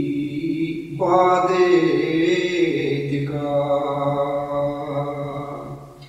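A solo unaccompanied male voice chanting a Kashmiri Sufi manqabat, a devotional praise poem, in long held notes. A new phrase starts about a second in and fades out near the end.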